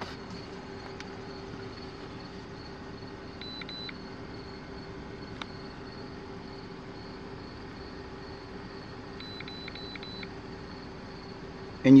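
Steady low hum of an idling car engine, with short faint electronic beeps from a Zurich ZR13 OBD-II scan tool: a pair about three and a half seconds in and a run of four near the end, as the tool links to the car's computer and brings up its emissions readiness status.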